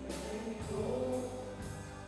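A live band playing on keyboard, guitars and drums, with held chords and a cymbal struck about twice a second.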